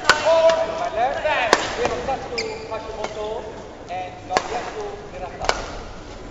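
Badminton rally: four sharp racket strikes on the shuttlecock at uneven gaps of one to three seconds, with shoes squeaking on the court floor between shots.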